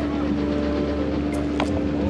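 Passenger ferry's engine running steadily under way: a constant low drone with an unchanging hum.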